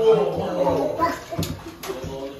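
Small children's voices babbling and chattering, then two sharp knocks in the second half, about half a second apart.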